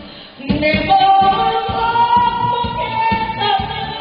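A woman singing a Korean trot song into a microphone over a backing track with a steady beat. After a brief break in the music at the start, she holds long notes.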